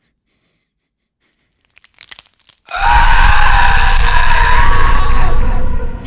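Sudden horror jump-scare blast: a loud, distorted, wavering shriek over a deep rumble, about three seconds long, coming in abruptly after a few faint crackles.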